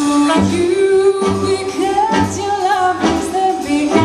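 Live jazz band with female vocals: a woman sings a melody over a walking double bass, drums and the rest of the ensemble.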